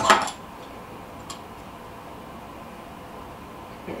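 A short clatter at the start and a faint tick about a second in, from small metal fly-tying tools being handled at the bench, then a low steady room tone.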